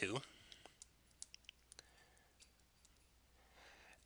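Faint, scattered clicks of a stylus tapping a tablet screen while the digits "22" are hand-written, about seven light ticks in the first two seconds.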